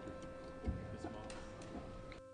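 Background sound of a legislative chamber during an open roll call vote: a steady hum under faint room noise, with scattered small clicks and one louder thump about three-quarters of a second in.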